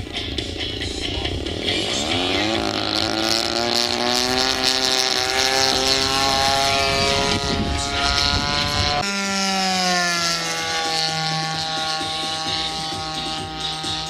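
Radio-controlled model airplane engine throttling up for takeoff, its note climbing in pitch, then holding a steady drone that drops to a lower pitch at about nine seconds in the climb-out.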